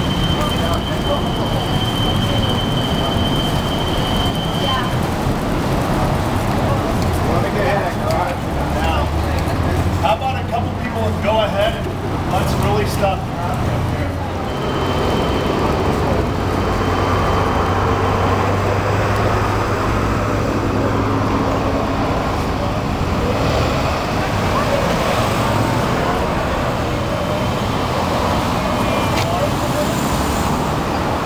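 Street traffic noise, with vehicles running close by and indistinct voices. A steady high tone sounds for the first few seconds and again for a couple of seconds about halfway through.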